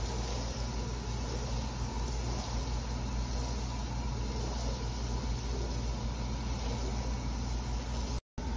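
A steady low machine hum, like an idling motor, runs throughout. Under it, water splashes as it is poured from a plastic watering can onto a wool rug on a concrete floor.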